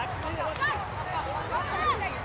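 Indistinct high-pitched voices calling and shouting across a soccer field, several short calls overlapping, over a low steady outdoor rumble.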